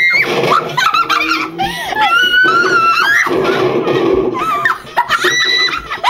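Several girls laughing hysterically and shrieking, their high-pitched squeals and laughs overlapping with hardly a break.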